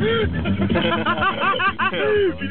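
Occupants yelling and whooping excitedly inside a car as it spins on snow, over the steady hum of the car; the whoops come thick and fast from about a second in.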